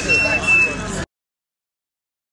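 Indistinct voices over a low rumbling background, with a thin, steady high tone; all sound cuts off abruptly about a second in, leaving silence.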